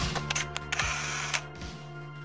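Camera shutter sound effect, a quick run of sharp clicks with a short burst of mechanical noise, over sustained intro music.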